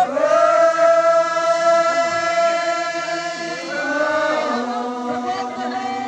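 A group of many voices chanting together in long, drawn-out held notes, the pitch shifting to a new note a little past halfway.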